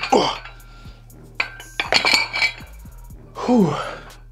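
Iron plates on hand-held dumbbells clinking, with a sharp clink about 1.4 s in and a ringing one around 2 s. A man lets out a drawn-out 'oh' at the start and an 'ouh' near the end, exhaling after the last rep of a hard set of curls.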